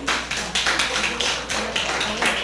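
Small audience applauding, individual claps distinct and quick.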